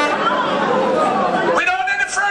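Voices only: overlapping talk and chatter, with a man's amplified voice on the microphone coming in strongly about one and a half seconds in.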